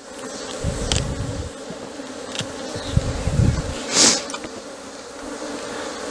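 Honeybees buzzing in a steady hum around a hive opened for the honey harvest, with low rumbling underneath. About four seconds in, a bee smoker gives a short puff of hissing air.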